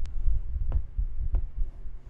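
Chalk writing on a blackboard: a heavy, uneven low rumble from the board with about three sharp chalk taps, roughly two-thirds of a second apart, the rumble easing toward the end.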